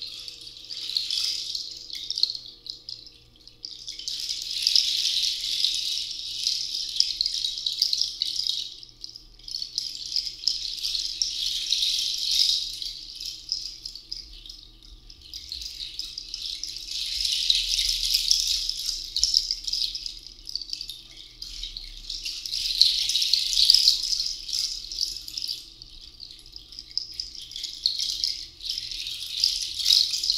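Hand rattle shaken in long, swelling waves, each rising and fading over a few seconds with short lulls between.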